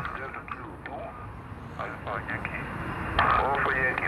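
Single-sideband voice reception from a Xiegu X6100 transceiver's small speaker: a busy shortwave band with hiss and faint, thin-sounding voices of distant stations, and a stronger station's voice coming in a little after three seconds.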